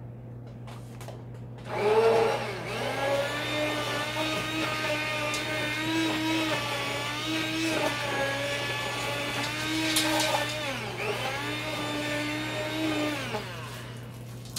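Hand-held immersion blender puréeing carrot soup in a metal pot, starting about two seconds in and running until just before the end. Its motor pitch wavers, dipping briefly twice as the load on the blade changes.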